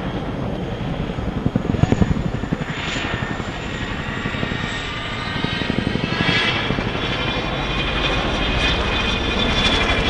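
RAF CH-47 Chinook's tandem rotors beating with a rapid blade slap, strongest about two seconds in, over the high whine of its twin turbine engines. The whine shifts in pitch as the helicopter banks and passes.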